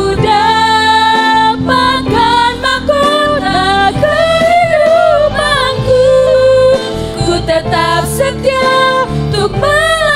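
Three women singing a worship song together into handheld microphones, with instrumental accompaniment: the refrain of the closing song, sung once more.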